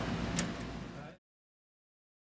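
Faint background noise with a single small click about half a second in, fading down. Just past a second in the sound cuts out to dead silence.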